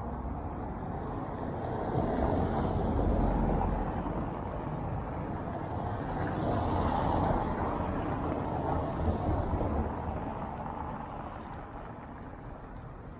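Cars passing on a cobblestone road, their tyre and engine noise swelling and fading a couple of times over a steady low rumble.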